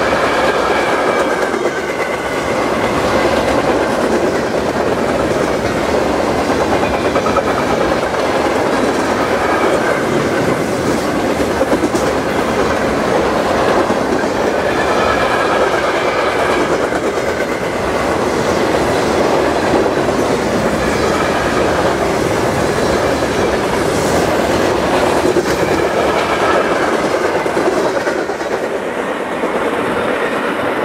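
Freight train of covered hopper cars rolling past at speed: steady, loud wheel-on-rail noise with a faint high squeal that comes and goes. The noise falls away near the end as the last car passes.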